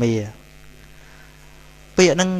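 A spoken word trails off, then a pause filled only by a steady electrical mains hum with its stack of overtones running under the recording.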